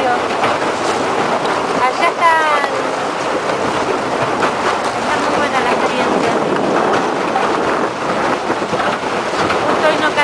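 Broken sea ice crunching and scraping against the hull of a moving tour boat, a dense, continuous clatter.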